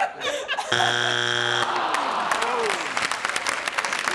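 Family Feud strike buzzer sounding once for about a second, marking a wrong answer that is not on the board. Studio audience applause and crowd noise follow.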